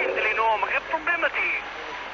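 Speech of an analogue mobile-phone call picked up on a radio receiver: a voice talking quietly for about a second and a half, then a short pause with a steady hiss.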